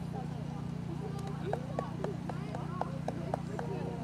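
Indistinct voices of people talking, over a steady low hum, with a few sharp knocks in the second half.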